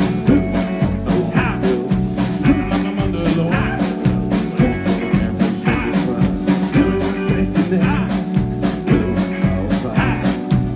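Live rock band playing: strummed acoustic guitar, electric guitar, bass and drum kit keeping a steady beat.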